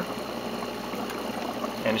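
Steady bubbling and rushing of water: air from an aquarium air pump bubbling out of a submerged algae scrubber in a saltwater pond.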